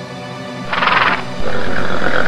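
A horse neighing briefly, with a quavering sound, about a third of the way in, over music. It is followed by a louder held tone that runs to the end.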